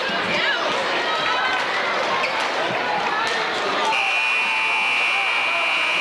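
Gymnasium crowd chatter and shouting. About four seconds in, a basketball scoreboard buzzer starts a single steady buzz that is still sounding at the end.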